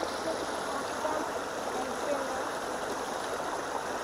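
Creek water spilling over rocks, a steady even running sound.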